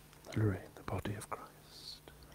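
A man's voice murmuring a few quiet words under his breath, ending in a soft hiss.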